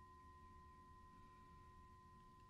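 Near silence with one faint, steady high ringing tone, the lingering ring of a hand-held brass singing bowl.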